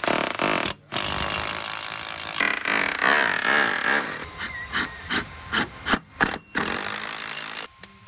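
Electric drill boring through a steel gate post's mounting holes into a stucco wall, run in several long bursts with brief stops and a flurry of short on-off pulses near the end.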